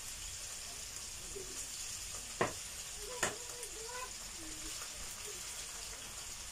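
Pieces of marinated meat sizzling in hot oil in a preheated frying pan as they are laid in with metal tongs, a steady hiss. There are two sharp clicks of the tongs, about two and a half and three seconds in.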